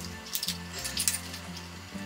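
Quiet background music with steady low notes, over a few light clicks and rustles of a small cardboard tube holder from a COVID self-test kit being handled and folded.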